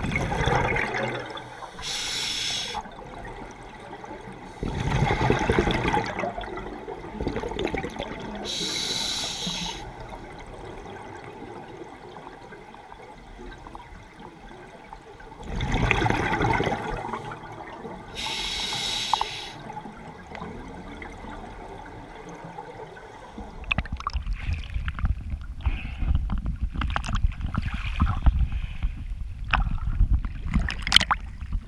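Scuba regulator breathing heard underwater: gurgling bursts of exhaled bubbles alternate every few seconds with the thin hiss of inhalation through the second stage. In the last six seconds this gives way to choppy water sloshing and buffeting around the camera as it breaks the surface.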